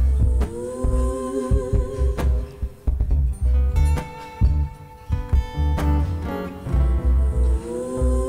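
Live looped music built on a loop-station pedal: a repeating deep low thump under long held melody notes that slide into pitch.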